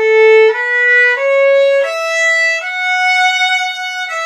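A solo violin bowing a short melodic phrase, five single notes stepping upward with the last one held longer, a demonstration of the passage in which the open E string is played.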